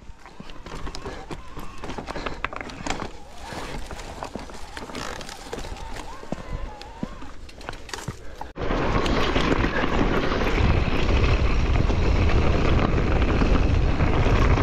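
Mountain bike being handled on limestone rock: scattered clicks, knocks and scrapes of tyres, pedals and shoes on stone. About eight and a half seconds in it cuts suddenly to the loud, steady rumble and rattle of the bike riding downhill over loose gravel, with wind on the microphone.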